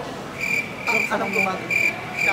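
A high-pitched electronic beep repeating evenly, five short beeps about two and a half a second, over background chatter.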